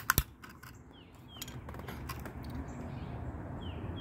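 Sharp plastic clicks as a Realistic pocket AM/FM radio is handled and its battery cover opened: two quick clicks at the start, a few lighter ticks, then steady handling rustle.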